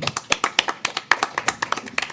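A few people clapping: scattered, uneven hand claps welcoming a participant as he is introduced.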